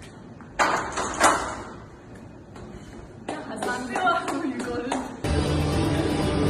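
Two sharp metal clanks a little over half a second apart, about a second in: a loaded barbell being set back onto the hooks of a squat rack after the final rep. Voices follow, and background music cuts in near the end.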